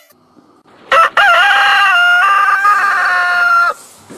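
A rooster crowing once, loud: a short opening note about a second in, then a long held cock-a-doodle-doo of nearly three seconds that cuts off sharply.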